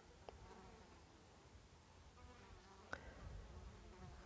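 Faint buzzing of a flying insect drifting near the microphone over near-silence, with two small clicks, one shortly after the start and one near the end.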